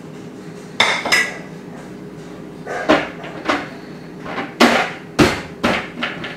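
Kitchenware clattering on a counter as a ceramic bowl and blender parts are handled: about seven sharp knocks, the loudest in the last second and a half.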